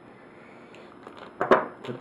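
A single sharp click from a folding pocket knife being handled about a second and a half in, after a quiet stretch of room sound.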